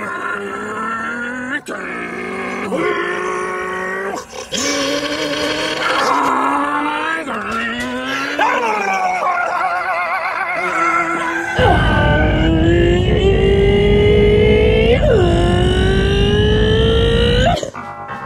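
Music built on sliding, wavering pitched notes, with a low steady rumble underneath from about two-thirds of the way in that cuts off suddenly near the end.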